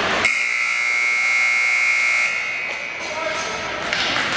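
Ice rink scoreboard horn sounding once for about two seconds, a steady buzz that cuts off suddenly and echoes through the arena, marking the end of a period.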